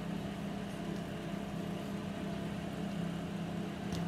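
Steady machine hum with a low, unchanging tone and no breaks.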